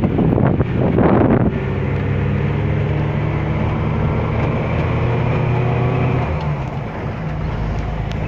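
Wind buffeting the microphone for about a second and a half, then a steady low engine hum with road noise, heard from inside a moving car. The hum eases off a little near the end.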